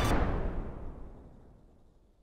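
The fading tail of a loud explosion-like boom, a noisy rumble dying away steadily over about a second and a half into silence.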